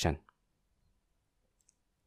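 A narrating voice ends its last word just after the start, then near silence with a couple of faint short clicks.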